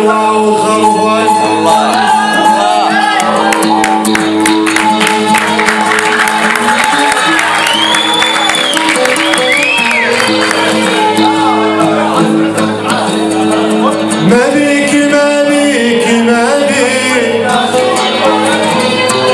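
An Arabic song performed live: a man singing over long held instrumental notes, with shouts from the audience.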